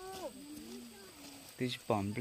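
People's voices talking, a short gliding utterance at the start, quieter voices in the middle and a louder burst of talk near the end, in what is plausibly Hmong that the speech recogniser did not pick up.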